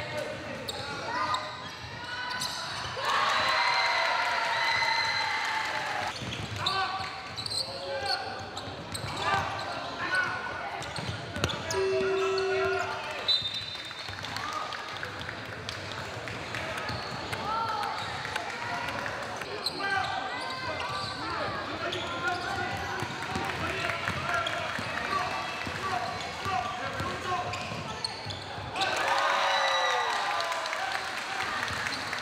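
Players shouting to one another in a large, echoing gym, with basketballs bouncing on the hardwood court. About twelve seconds in, a short, steady low buzzer tone sounds, marking the end of the quarter, followed by a brief high whistle.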